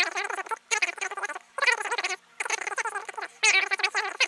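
A voice sped up and raised in pitch into squeaky, chipmunk-like chatter, in bursts of under a second with short pauses.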